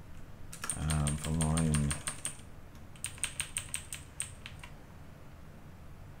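Typing on a computer keyboard in two quick runs of keystrokes, with a pause of under a second between them. A short wordless voiced hum overlaps the first run.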